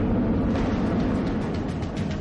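Steady low rumble of a Delta II rocket's liftoff, under a music score.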